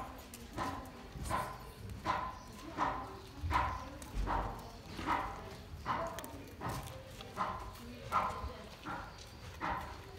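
A Siamese-type cat eating dry kibble, chewing in a steady rhythm of short sounds, a little more than one a second.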